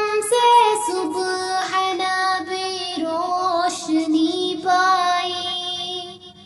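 A high solo voice singing a naat, an Urdu devotional hymn, drawing out long held notes that bend and slide in pitch between the words of a line.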